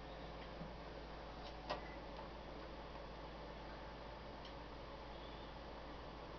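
A few faint, scattered clicks of a hand on the knobs and front panel of a Uniden President Madison CB radio, over a quiet steady hum.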